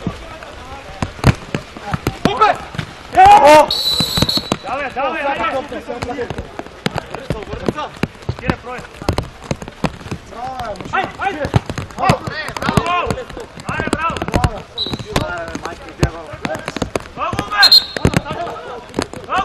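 Mini-football match sounds: a ball being kicked again and again on artificial turf, with players shouting to each other. There is a loud burst about three seconds in.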